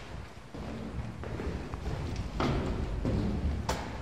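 A low rumble with a few soft thuds spread through it, from footsteps and the handling of a handheld camera as it is carried past the switchgear.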